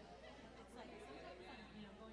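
Faint, indistinct chatter of many people talking at once as a congregation mingles in a hall.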